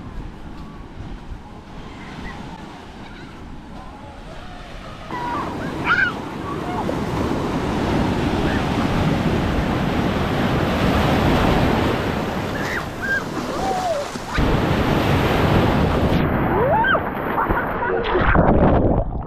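Ocean surf breaking and washing through foam, with wind buffeting the microphone. It is quieter for the first few seconds, then louder and closer from about five seconds in, as if heard from right in the breaking waves.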